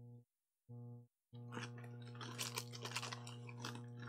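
A person chewing a mouthful of Whopper burger close to the microphone, with moist crunching from about one and a half seconds in until near the end. Behind it is a steady low hum that cuts in and out.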